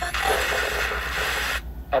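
A 5 Core AM/FM/shortwave portable radio hissing with static as its tuning knob is turned on the FM band. About a second and a half in, the hiss cuts off suddenly and a station's voice comes through the small speaker, which sounds a little distorted.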